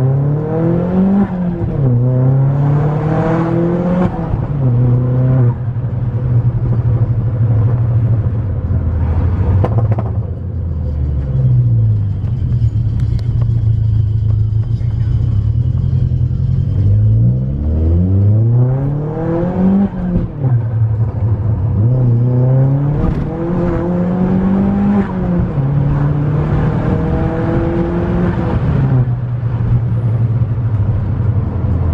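Turbocharged 2.0-litre four-cylinder (Z20LET) engine in a Vauxhall Astra van, heard from inside the cab: two hard accelerations, one near the start and one past the middle. Each time the revs climb, drop at a gear change and climb again. In between it cruises steadily, and the revs fall off once.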